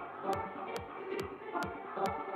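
Progressive psytrance track: a steady four-on-the-floor kick drum with a falling pitch, about two and a half beats a second, with a crisp tick over each beat and a busy synth pattern in the midrange.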